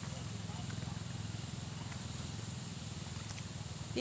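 A steady low hum with a fast, even pulse, like a small motor running, under a steady outdoor hiss.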